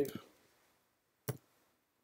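A single keystroke click on a computer keyboard, a little past a second in, as text is being typed.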